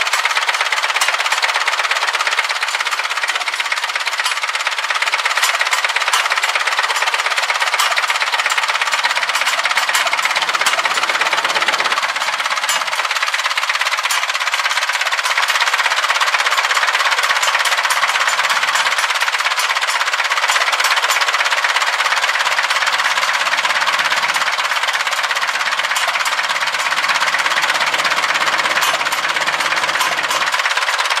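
A McCormick Farmall M tractor's four-cylinder engine idling steadily, with a rapid, even clatter.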